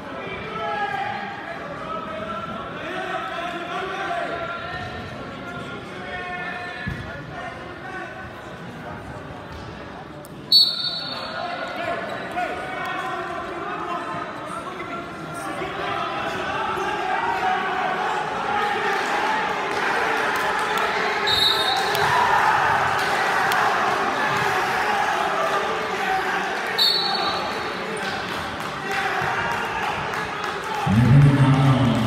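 Referee's whistle blowing three short blasts, the first about a third of the way in together with a sharp thud, the other two later on, stopping and then restarting the wrestling. Underneath, crowd chatter echoes through the gym, growing louder in the second half, with wrestlers' bodies thudding and scuffing on the mat.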